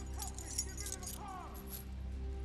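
Metal keys and leg-iron chain jangling, with a string of short metallic clicks, as leg shackles are worked loose.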